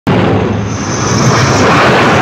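Vought F-8 Crusader's J57 turbojet running at high power on the catapult before a launch, loud and steady, with a faint high whine in the first second or so.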